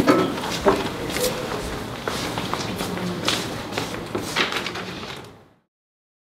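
Scattered knocks and rustling of people moving around a classroom desk as a student lays her head down on it. The sound fades out to silence about five and a half seconds in.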